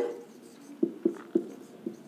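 Marker pen writing on a whiteboard: four short strokes of the pen, starting a little under a second in.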